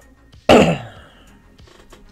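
A man coughing once into his elbow, a single sharp, loud cough about half a second in that dies away quickly.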